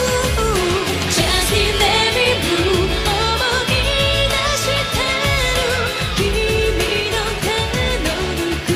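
A woman singing a Japanese pop song live into a handheld microphone, backed by a band with electric guitar and a steady beat; her voice carries the melody throughout.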